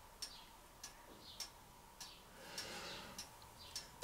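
Faint, regular ticking, about three sharp ticks every two seconds, with a soft rustling noise between two and a half and three seconds in.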